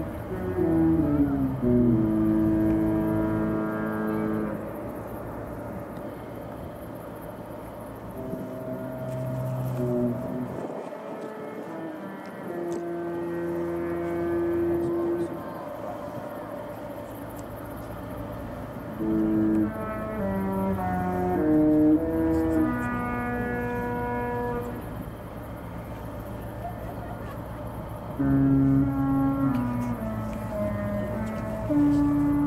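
A Disney cruise ship's musical horn playing a tune. It sounds as several phrases of long held notes that step up and down in pitch, with pauses between the phrases.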